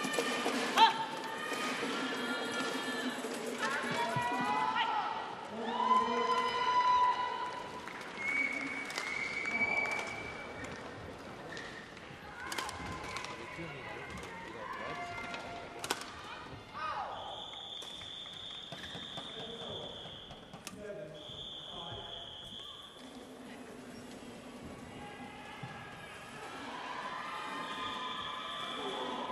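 Voices talking for the first ten seconds or so, then several sharp knocks, then two steady high-pitched tones of about three seconds each.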